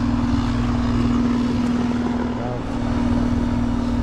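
Rheem heat pump outdoor unit running: a steady compressor hum over continuous fan noise.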